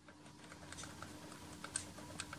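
Faint, irregular ticking and rattling from a CD on the turntable of a Naim NAC D3 CD player, over a faint steady hum. The disc's centre hole is too large and the original Naim puck does not clamp it firmly enough, so the disc rattles and knocks on the turntable.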